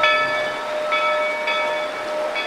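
Steam locomotive's bell being rung repeatedly: a steady pitched clang whose upper ring is renewed with each swing, about three strokes in two seconds.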